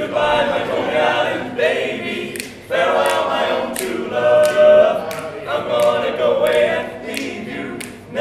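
Male barbershop quartet singing a cappella in four-part close harmony, in phrases that break and start again every second or two.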